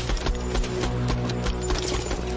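Film score with a held low drone under a rapid, uneven run of sharp, muffled pops: suppressed rifle fire.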